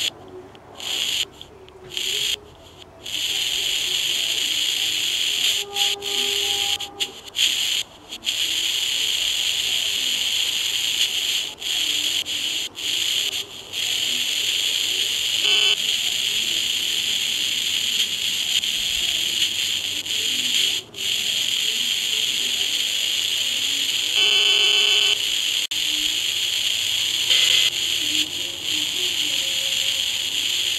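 Hiss from a superregenerative 433 MHz receiver module through a small speaker, cut into silence again and again by short presses of a 1-watt handheld transmitter's push-to-talk: each carrier quiets the receiver. A brief buzzy tone sounds about 24 seconds in.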